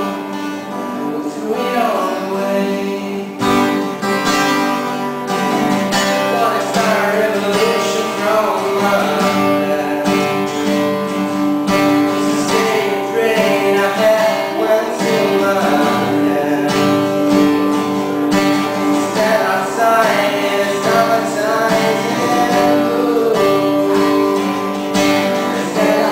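Acoustic guitar played with a man singing along.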